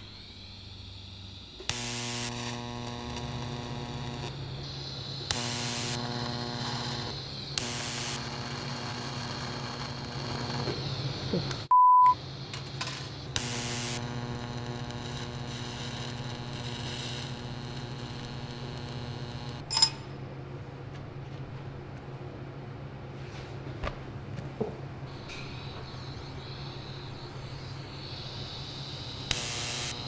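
TIG welding arc on mild-steel tubing: a steady electrical buzz and hiss, broken by several sharp crackling arc starts and a sharp pop near the middle. The popping and sparking come from a mismatched aftermarket collet in the torch, which makes the weld act as if it had no shielding gas. A short high beep sounds near the middle.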